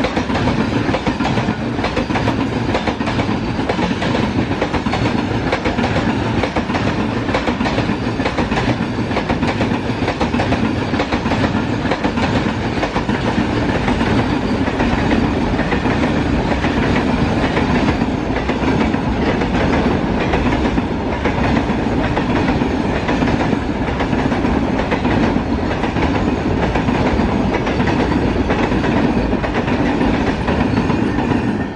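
Long rake of Indian Railways BCNA covered goods wagons rolling past on the near track, a steady loud rumble of steel wheels with a rapid clickety-clack over the rail joints.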